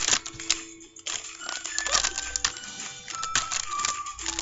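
Plastic candy packets crinkling and clicking as they are picked up and moved about on a table. Faint music with steady held notes plays underneath.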